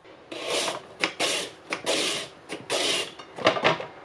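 A carrot pushed back and forth across a julienne mandoline slicer: about half a dozen scraping strokes as the blade shreds it into thin strips, coming quicker and shorter near the end.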